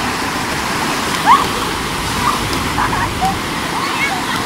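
Surf breaking steadily on a sandy beach, with short high shouts and squeals from bathers in the water, the loudest about a second in.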